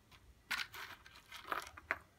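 Rustling and crinkling of lace and paper scraps as hands rummage through a box of them: a burst about half a second in, then two shorter ones near the end.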